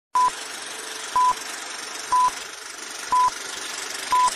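Film-leader countdown sound effect: a short, high, steady beep once a second, four beeps in all, over a steady hiss.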